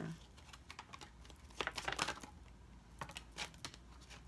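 Tarot cards being shuffled in the hands: faint clicking and flicking of the deck in two short flurries, about a second and a half in and again around three seconds in.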